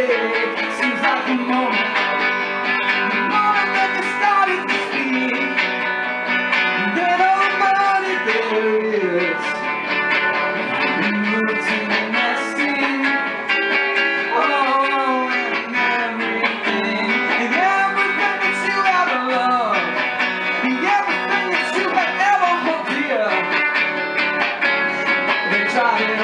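Electric guitar played live, an instrumental passage of a surf-rock-styled song, with a melodic line that bends in pitch over steadily sustained notes.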